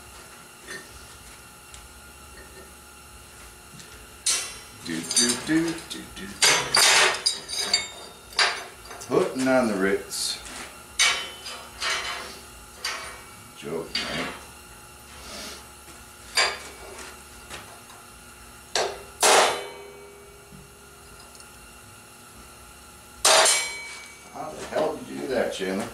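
Steel bar and rod stock clanking and knocking against a steel worktable as it is handled, in irregular sharp metal impacts with some ringing. The loudest is a burst of hammer blows on steel near the end.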